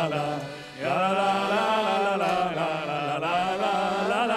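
Several voices singing a farewell song together, most likely its wordless 'la la la' refrain, with a short break for breath just before a second in.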